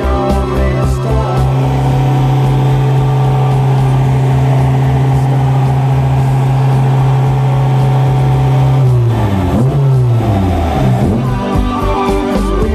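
Tuned, naturally aspirated Honda S2000 four-cylinder engine running on a chassis dynamometer: a loud, steady engine note held for about nine seconds, then winding down with a falling pitch as the run ends. Background music with a beat plays underneath.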